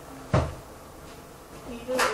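A single short thump about a third of a second in, with a faint voice sound near the end.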